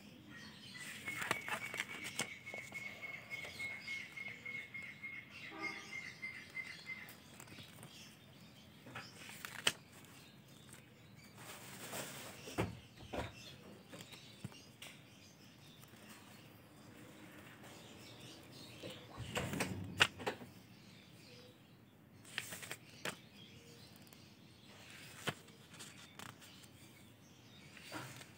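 Paper pages of a spiral-bound notebook being turned and handled: faint, scattered rustles and flaps, the strongest a little before halfway and again about three quarters through. A thin, high, rapidly repeating chirp runs through the first several seconds.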